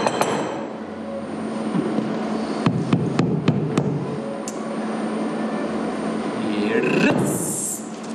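A hand hammer tapping on a small object on stage: about five quick, sharp taps within a second, roughly three seconds in, over a steady background hum.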